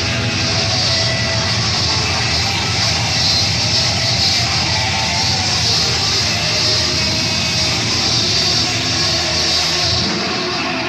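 Heavy metal band playing live, heard on a raw bootleg tape: distorted electric guitars and cymbals blur into a steady, dense wall of sound with little clear melody or vocal.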